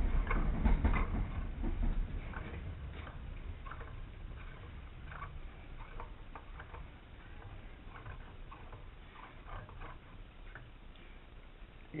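Stainless steel counterweight shaft being screwed by hand into an EQ8 equatorial mount head: faint, irregular ticks and scrapes of the threads and hands turning the shaft, with heavier handling knocks in the first couple of seconds.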